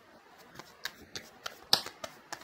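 Tarot cards being shuffled and handled by hand: a handful of sharp, irregular card snaps and clicks, the loudest just before the end.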